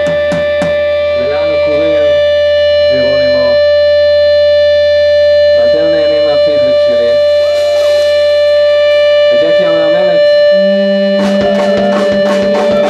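Live rock band in an ambient interlude: a single held note with its overtones drones steadily over a low bass drone, with short vocal phrases into the microphone. The low drone drops out about nine seconds in, and near the end drum hits and a new bass note come in as the band builds back up.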